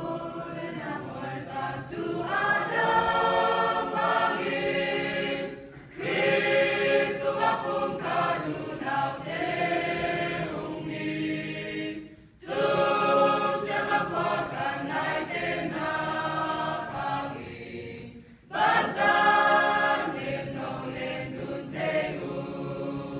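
Mixed choir of men and women singing a hymn in four phrases, with short breaks between them.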